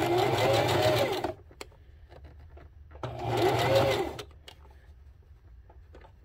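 Electric sewing machine stitching in two short runs, the first about a second long and the second starting about three seconds in. Its motor pitch rises and falls within each run, with a few faint clicks in the pause between.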